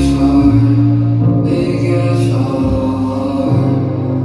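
Live band music played loud through a concert sound system, with a singer's voice over held chords and a bass line that change every second or so.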